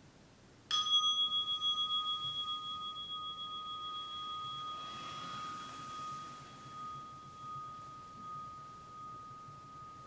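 A meditation bell struck once, about a second in, ringing out with a clear high tone that wavers slightly as it slowly fades, marking the end of the sitting period. A soft rustle of robe cloth midway through.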